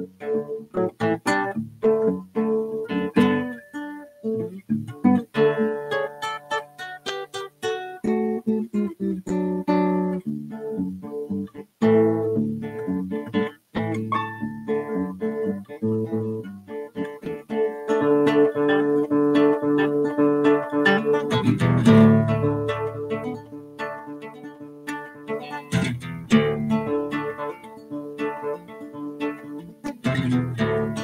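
Solo nylon-string classical guitar played fingerstyle: a continuous flow of plucked notes and chords, growing loudest and fullest in the bass about two-thirds of the way through.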